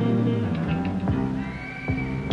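Electric blues band playing live, with sustained pitched notes over sharp drum hits. A long, high held note comes in about halfway through.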